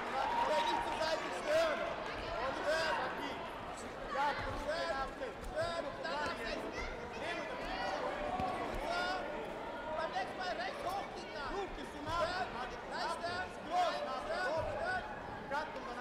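Several voices shouting over one another throughout, with occasional dull thuds from taekwondo kicks and footwork on the mat.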